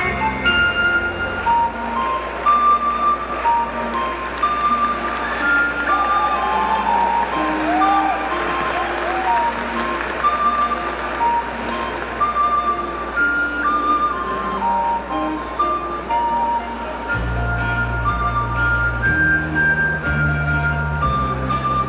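Instrumental backing track of a Japanese children's song playing over the stage PA, a flute-like melody of held notes with no singing; deeper bass notes come in near the end.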